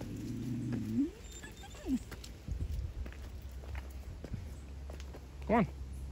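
Footsteps on a wet concrete path, a series of small knocks in the middle, after a brief low voice-like sound that rises in pitch about a second in and a short falling one about two seconds in.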